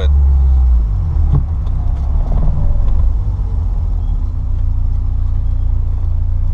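Peugeot 205 Dimma driving at a steady pace, heard from inside the cabin: a steady low rumble of engine and road noise, a little louder in the first second.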